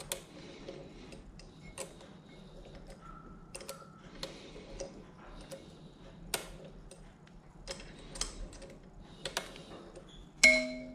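Light, irregular metallic clicks and taps from hands and a small tool working on a Wug2-83A coffee grinder's burr assembly during a burr swap, one sharper click about six seconds in.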